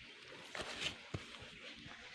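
Faint handling noise of hands working at a muddy, wet hole among grass: soft rustling with a brief scrape about half a second in and a sharp click just past a second.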